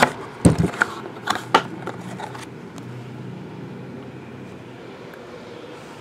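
Hands handling a cardboard card box and a rigid plastic card holder: a few knocks and taps in the first couple of seconds, the loudest a dull thump about half a second in. A low steady hum follows.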